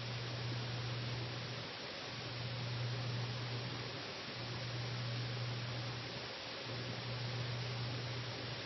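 Quiet room tone: a steady hiss with a low hum that breaks off briefly about every two seconds.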